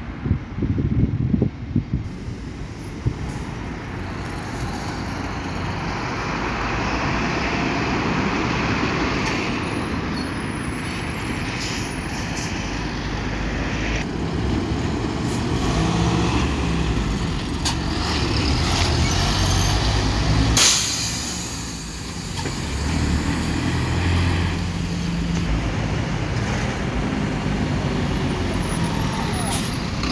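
City bus diesel engines running as buses pull out and drive past, with one short, loud hiss of air brakes about two-thirds of the way through.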